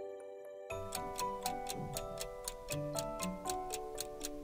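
Light background music, joined less than a second in by a clock-like ticking effect at about four ticks a second, counting down the thinking time for a quiz question.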